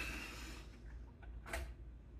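Quiet room with a low hum and a single short click about one and a half seconds in.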